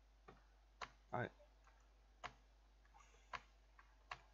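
Four isolated, sharp clicks of keys being struck on a computer keyboard, spaced irregularly about a second apart.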